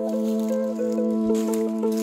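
Background music: a steady held low note with a melody stepping between notes above it.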